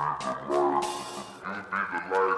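Outro of a hip-hop instrumental beat: melodic notes in uneven swells, with no drums or bass underneath.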